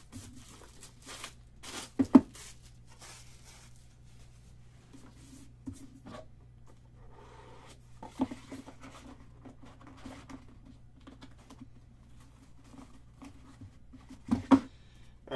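Plastic shrink wrap being torn and crinkled off a box of trading cards, loudest in a sharp rip about two seconds in. After that come quieter clicks and rustles as the cardboard box is opened and handled.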